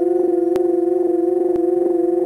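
Film soundtrack music: a single note held steady, with a few overtones, sounding like an electronic or organ-like drone. Faint clicks come about once a second.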